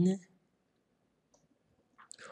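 A spoken word trails off at the start, then near silence broken by one short, faint click about a second and a half in.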